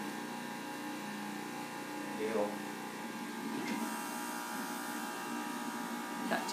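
Electric centrifugal juicer's motor running steadily, a hum of several steady tones.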